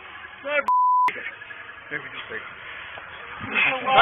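A single steady high-pitched censor bleep, under half a second long, about two-thirds of a second in, cutting over body-camera speech; voices grow louder near the end.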